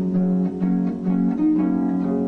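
Concert harp played solo, an instrumental passage of plucked notes, several ringing together, with a fresh pluck every fraction of a second.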